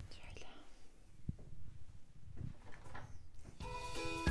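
A faint whispered voice with light handling noise, and a single sharp click about a second in. Music with sustained tones comes in near the end.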